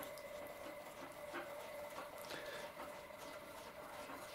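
Faint, sparse ticks and creaks of a small hand screwdriver turning a screw into a thin plywood hatch over balsa, over a faint steady hum.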